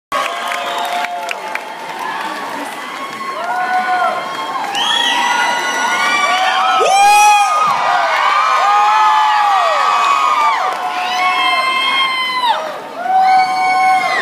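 Concert crowd cheering, with many high-pitched screams and whoops held for a second or so each, overlapping over a bed of shouting and clapping. It dips briefly near the end, then swells again.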